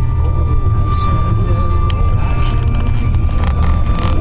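Steady low road rumble inside a moving van's cabin, with a thin, steady high whine and faint voices.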